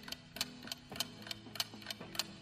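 Clock-tick sound effect of a quiz countdown timer, evenly spaced at about three ticks a second, over a faint sustained music bed.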